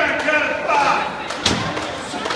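One heavy thud, about a second and a half in, of a wrestler's body landing on the wrestling ring mat, over voices.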